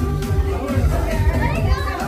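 Background music with a steady bass beat, with children's voices over it.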